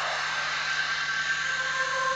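Steady rushing, hiss-like drone from the drama's soundtrack effects, with faint held tones beneath, swelling slightly towards the end.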